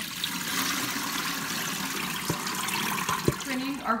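Water running steadily from a kitchen tap as jarred grape leaves are rinsed in a metal bowl over a colander. There are two light knocks in the second half.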